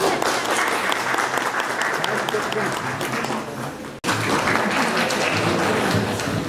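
Audience applauding, a dense patter of many hands clapping, with voices mixed in. The sound breaks off abruptly about four seconds in and picks up again.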